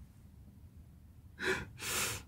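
Near silence, then, about one and a half seconds in, two quick breaths from a man laughing under his breath.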